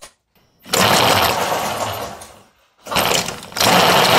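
Rubber snowmobile-style track on an electric snow scooter, driven by the rear hub motor and spinning freely with no load. It starts about a second in and dies away, then starts again just before three seconds in and runs loud and steady near the end.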